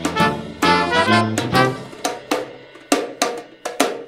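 Swing fanfare band playing: trumpet, trombone, soprano saxophone, sousaphone, banjo and drum kit play an instrumental phrase between sung lines. Halfway through, the held brass notes give way to sharp, separate drum hits before the band comes back in.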